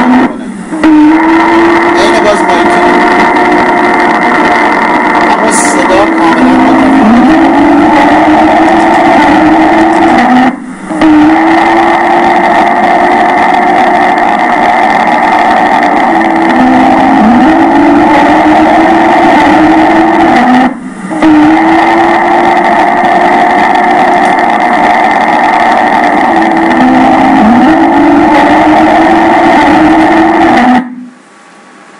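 EMG loudspeaker playback of classic neuromyotonic discharges: a loud, continuous high-pitched whine like a Formula 1 car's engine, with brief drops in pitch now and then. It is the very high-rate (up to about 250–300 Hz) spontaneous motor-unit firing of neuromyotonia. The recording stops briefly and restarts about 10 and 21 seconds in.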